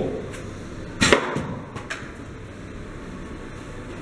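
An arrow shot from a bow strikes a moving disc target: one sharp impact about a second in, followed by a couple of lighter knocks. The hit is a centre shot.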